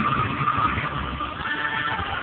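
Steady road and engine noise inside a moving car's cabin, with music playing over it.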